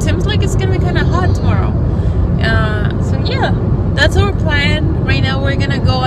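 A woman talking inside a moving car, over the steady low rumble of the car's engine and road noise.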